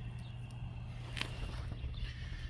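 A steady low hum under faint rustling, with one sharp click a little after a second in.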